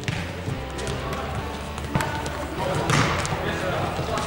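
A futsal ball being kicked and bouncing on a hard sports-hall floor: a few sharp knocks, the loudest about three seconds in, echoing in the large hall, with players' voices calling.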